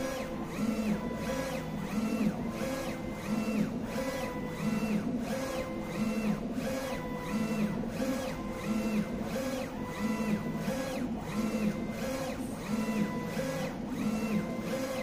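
3360 UV flatbed printer printing on acrylic: the print-head carriage shuttles back and forth, its drive whining up, holding and dropping with each pass, about one pass a second, over a steady machine hum.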